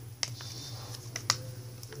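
A folded sheet of paper being handled and creased by hand: several short, sharp clicks and crinkles, over a steady low hum.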